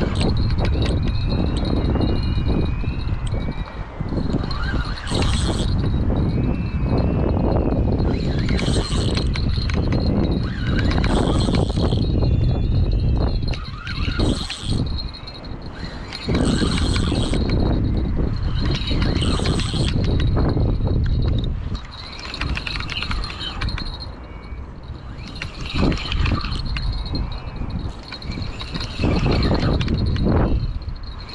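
Wind buffeting a body-worn camera's microphone, with short bursts of handling noise from the rod and reel every two to three seconds.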